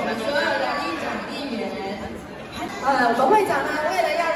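Many voices talking at once in a large hall: overlapping crowd chatter.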